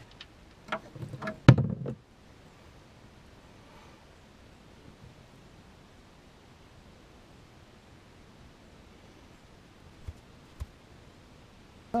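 A few knocks and clicks of hands and tools working under a Yamaha Rhino UTV to drain its engine oil, the sharpest about a second and a half in. Then there is a faint steady hiss while the oil drains into the pan, with two light ticks near the end.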